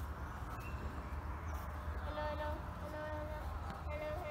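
A child's voice, faint and distant, speaking in short held phrases from about halfway in, over a steady low rumble of wind on the microphone.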